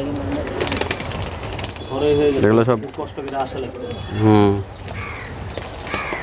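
Teddy pigeons cooing low and steadily in wire cages, with two louder pitched voice calls about two and four seconds in.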